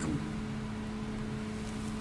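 Studio room tone: a steady low electrical hum with faint hiss.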